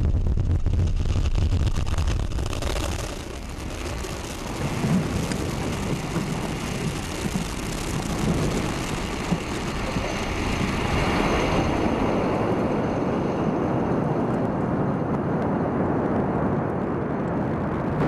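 Falcon 9 rocket's nine Merlin 1D first-stage engines at liftoff and climb-out: a loud, continuous rumble that stays steady throughout.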